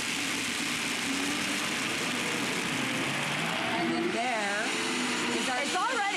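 Dash high-horsepower countertop blenders running on the soup program, a loud steady motor whir as they blend broth and vegetables. A steady whine joins in about five seconds in.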